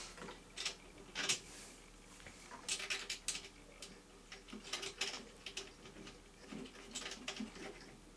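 Faint clicks and taps as the removable sleeve is fitted by hand onto the capstan of an AKAI 4000DS MK-I reel-to-reel deck, putting it back to 7½ inches per second from 3¾. The clicks come in small clusters over a faint steady hum.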